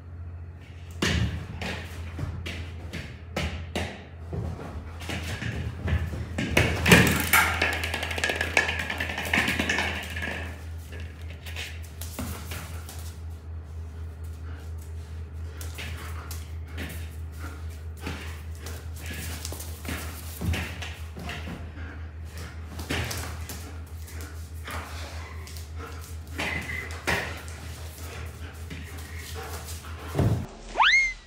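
A German Shepherd puppy jumping and landing while playing for a ball, its paws scrabbling and thudding on a mattress and tile floor. There are many short taps and knocks, busiest and loudest a few seconds in, over a steady low hum.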